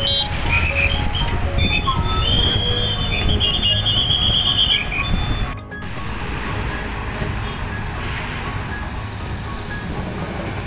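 Road traffic on a jammed highway: a steady rumble of trucks and cars, with several short, high vehicle horn blasts in the first half. The sound breaks off briefly a little past the middle, then the traffic rumble carries on.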